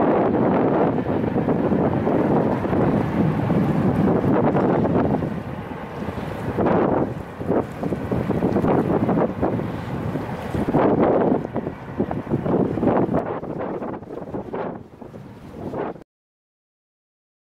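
Wind buffeting the microphone: a dense, rough rumble, strong and steady for the first few seconds, then easing and coming back in gusts before cutting off abruptly at the end.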